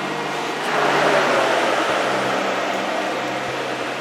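Commercial blast chiller running with a steady mechanical hum. A rush of fan noise swells about a second in as it is opened, then slowly eases off.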